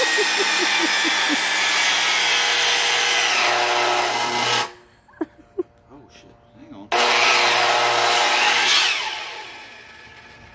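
Makita miter saw running and cutting through wood, a loud blade whine over cutting noise. It cuts off abruptly about four and a half seconds in, comes back on just before seven seconds, and winds down near the end.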